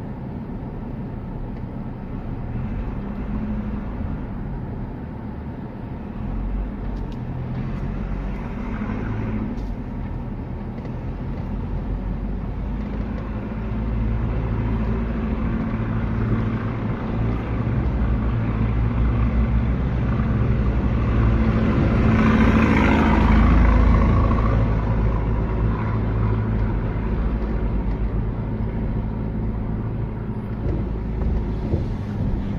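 A car's engine and road noise heard from inside the cabin while driving slowly. The sound is a steady low rumble, with a louder rush of noise about three-quarters of the way through.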